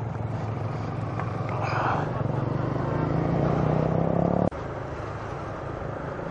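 Motorcycle engine running steadily while riding, with wind and road noise, heard from on the bike. The engine note builds slightly, then the sound drops and changes abruptly about two-thirds of the way through.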